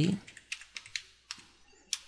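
Computer keyboard being typed: about half a dozen separate, unevenly spaced keystrokes.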